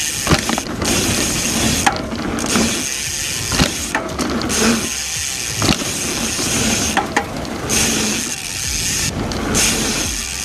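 Mountain bikes ridden fast down dirt trails: tyres rolling on dirt, with sharp knocks from landings and frame rattle. The rear freehub ratchet buzzes while the bikes coast. The sound drops out briefly several times.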